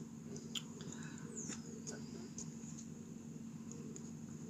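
Faint handling sounds from hands working twine round a leather slingshot tab: a few small clicks and a light rustle over a quiet background.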